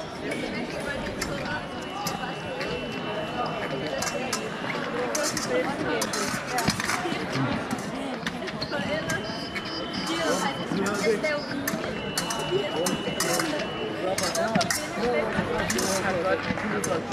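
Épée fencing sounds: short metallic clicks and clinks of steel blades and footwork on the metal piste, over a hall full of voices. A steady high electronic tone, typical of an épée scoring machine registering a touch, sounds three times, each for about two seconds.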